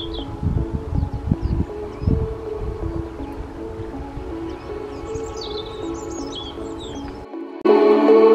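Soft background music of held notes with small birds chirping over it: a chirp at the very start and a run of chirps about five to six and a half seconds in. Low rumbling thumps come in the first two seconds. Near the end the music drops out for a moment and comes back louder.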